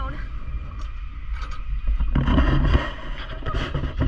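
Steady low rumble of wind on an outdoor camera microphone, with a louder stretch of muffled voices and rustling about two seconds in.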